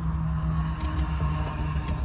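A car heard from inside its cabin: a steady low engine-and-cabin drone with a held hum.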